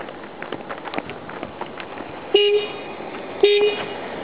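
A car horn beeps twice, two short beeps about a second apart, over a steady crackling background with scattered clicks.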